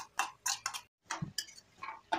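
A metal spoon knocking against a steel kadai while stirring, a run of about six sharp, separate clicks with a brief gap near the middle.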